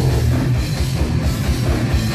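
Death metal band playing live at full volume: distorted guitars and bass over fast, hammering kick drums.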